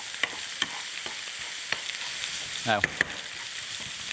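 Steady sizzling of lamb cutlets searing in one frying pan and diced smoked bacon with onion and garlic frying in another, with a spoon stirring the bacon and clicking against the pan a few times.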